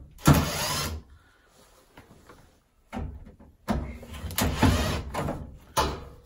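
Cordless drill-driver running in bursts to undo the two screws holding a combi boiler's front case: a short run near the start, a pause, then a brief run and a longer one of about two seconds in the second half.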